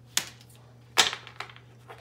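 Tarot cards being shuffled by hand, with two sharp snaps of the cards about a second apart and a few lighter ticks after.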